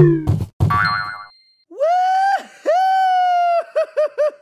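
Cartoon sound effects from an animated logo intro: a quick clatter and buzzy rattle, then a run of bouncy, held pitched notes with quick boing-like blips near the end.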